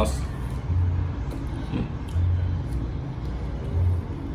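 Low background rumble that swells and fades three times.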